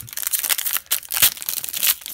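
Foil wrapper of a 2019-20 Upper Deck Series 1 hockey card pack being torn open and crinkled by hand: a dense run of crackling and sharp crinkles.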